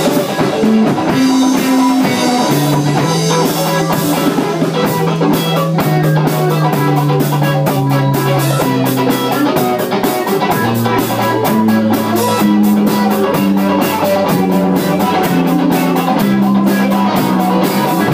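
Live rock band playing an instrumental passage: electric guitar, a bass line moving in held low notes, and a drum kit with dense, steady cymbal strikes.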